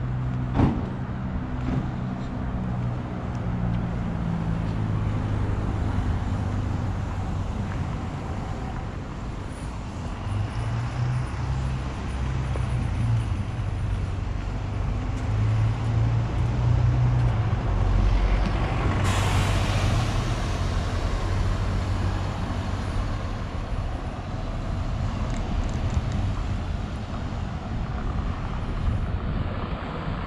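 City road traffic: a heavy vehicle's engine runs low and steady, with passing traffic noise. There is a click just after the start and a short, loud hiss about two-thirds of the way through.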